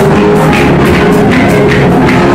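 Loud dance music with drums keeping a fast, even beat, about three beats a second, over sustained instrumental notes.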